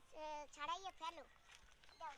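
A woman speaking in short phrases, then a brief pause.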